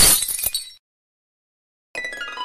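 A single sudden crash, a sound effect laid over the edit, that dies away in under a second. Music starts right at the end.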